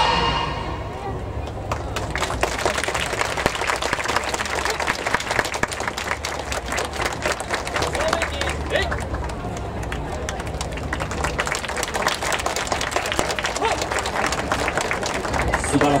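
Audience applause, many hands clapping steadily with some crowd voices mixed in, as the dance music fades out in the first second.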